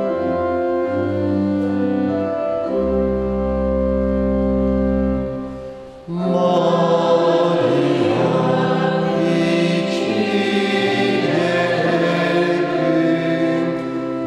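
Held instrumental chords over a deep bass note fade away, then about six seconds in a choir begins singing a hymn with accompaniment.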